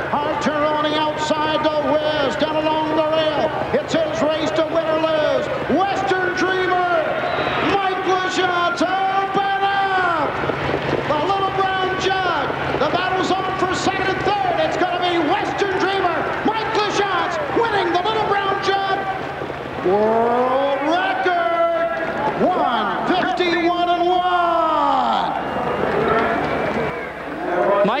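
Harness-race commentary: a man calling the stretch drive and finish continuously in a raised, high-pitched voice, stretching out some words.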